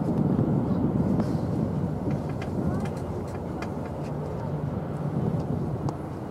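A steady low outdoor rumble that eases slightly about halfway through, with a few faint ticks.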